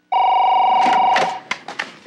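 A single warbling electronic telephone ring lasting about a second, followed by a few short clicks and knocks.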